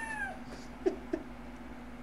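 A man's stifled, high-pitched laughter: one rising-and-falling squeal at the start, then two short snorting bursts about a second in.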